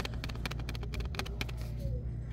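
Plastic blister pack of adhesive hooks being turned in the hand, giving many irregular light clicks and crinkles, over a steady low hum.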